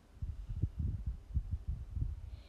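Irregular dull, low thuds of a spatula stirring and pushing strips of vegetables around in a wok, starting just after the beginning.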